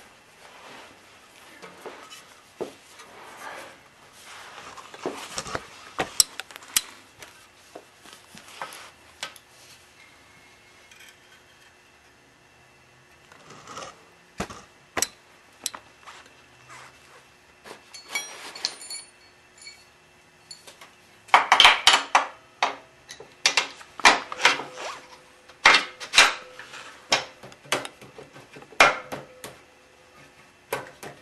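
Metal-on-metal clinks, scrapes and knocks as a BMW F650GS swingarm is worked into the frame and its pivot bolt pushed through, the washers being lined up. The knocks come scattered and quieter in the middle, then a busy run of sharp clanks in the last third.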